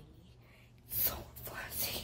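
A person whispering softly in two short breathy bursts, one about a second in and one near the end.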